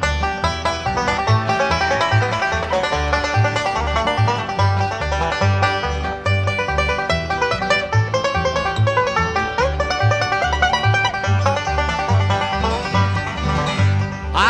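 Live bluegrass band playing an instrumental break between sung verses, with a five-string banjo picking busily at the front over guitar and an upright bass thumping out alternating notes on the beat.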